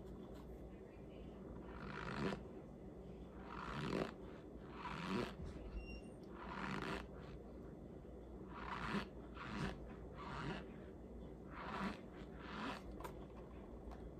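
Mouth and breath sounds of a person eating a spoonful of dry cornstarch: a series of soft, noisy bursts about every one to two seconds.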